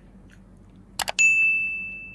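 Subscribe-button animation sound effect: a mouse click about a second in, then a bright bell ding that rings out and fades over about a second and a half.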